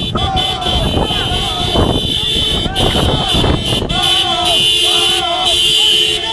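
Men shouting and chanting loudly over the low rumble of vehicles. From about four seconds in, a steady horn-like tone on two pitches sounds beneath the shouts.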